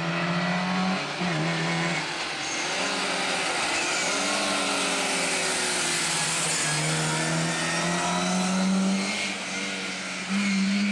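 Classic Lada Zhiguli saloon rally car's four-cylinder engine worked hard through a bend. The pitch drops briefly about a second in, then climbs and holds high as the car passes close and pulls away.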